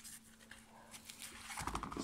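Faint handling noises: a black nylon knife sheath rubbing and shifting in the hands, and a folding knife being set down beside it, over a faint steady hum.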